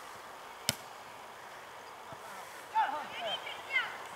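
A football kicked once with a sharp knock about a second in, followed near the end by young players' high-pitched shouts across the pitch.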